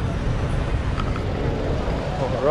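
A car running close by in city street traffic: a steady low rumble with no distinct events.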